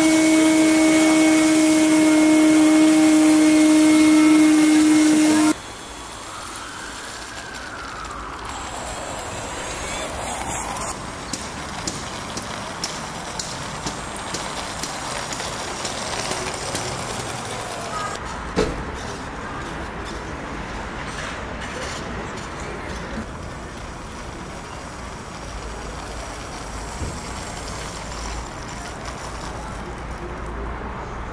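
RC model airplane's nose propeller and motor running with a steady high-pitched whine while the plane is held up by hand, breaking off suddenly about five seconds in. Quieter outdoor sound follows, with a tone that falls and rises again, scattered light clicks and one sharp knock past the middle.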